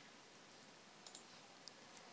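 Near silence: room tone with a few faint computer mouse clicks, a close pair of them about a second in.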